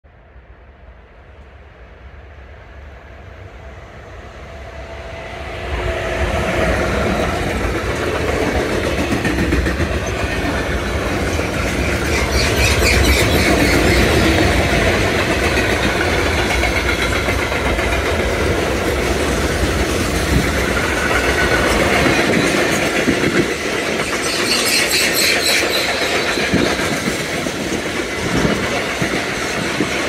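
Freight train hauled by an electric locomotive approaching, growing steadily louder over the first six seconds, then a long string of sliding-tarpaulin freight wagons rumbling and clattering past close by. The sound turns harsher and higher twice along the passing rake.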